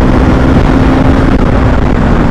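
Bajaj Pulsar motorcycle engine running steadily at cruising speed, its hum held at one pitch, under loud wind rush on the microphone.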